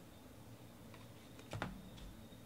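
Faint handling of a stack of trading cards, ending in one light knock with a low thud about one and a half seconds in as the stack is set down on the table.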